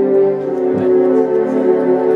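Live band music: sustained chords held steady, with one low thump a little under a second in.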